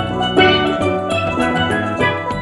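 Carousel band organ music: a tune of steady held notes over a regular beat in the bass.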